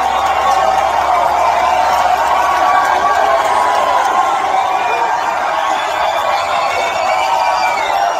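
A large crowd cheering and shouting, many voices overlapping at a steady level.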